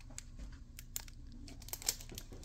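Faint crinkling of the clear plastic wrap around a dry-erase board as it is handled: a scatter of small crackles and ticks.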